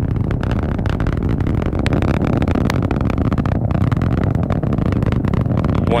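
Atlas V rocket's RD-180 first-stage engine during ascent, heard from the ground as a loud, steady low noise with continual crackling.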